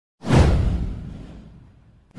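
A whoosh sound effect for an animated intro: a sudden falling swish over a deep low rumble, starting about a fifth of a second in and fading away over about a second and a half.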